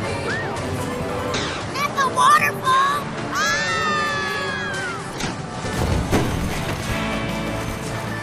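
Cartoon soundtrack: background music under character voices and sound effects, with loud sliding, wavering pitched cries about one and a half seconds in and again about three and a half seconds in.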